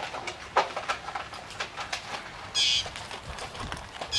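A dog eating from a plastic bowl: irregular sharp clicks and crunches as it chews and its muzzle knocks the bowl. A bird gives one short, high call about two and a half seconds in.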